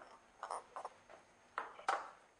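An egg tapped and cracked against the rim of a small glass bowl: a few short, light taps with quiet between, the sharpest near the end.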